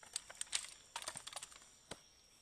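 Several soldiers' rifles handled in a drill movement: an irregular scatter of small clicks and clacks from hands and metal parts on the weapons, with one sharper clack near the end.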